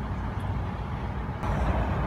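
Low rumble of a motor vehicle running in a car park, heard from inside a parked car, getting louder about one and a half seconds in.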